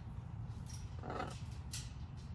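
A macaw gives one short, rough call about a second in, followed by a sharp click near the end, over a steady low rumble.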